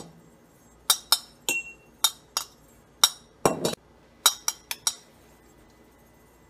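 Metal spoon clinking against a stainless steel funnel seated in a glass mason jar while bran is spooned through, about a dozen irregular sharp clinks with a short metallic ring, starting about a second in and stopping before the end.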